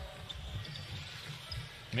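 A basketball being dribbled on a hardwood court, heard as faint, irregular low thuds over quiet arena ambience.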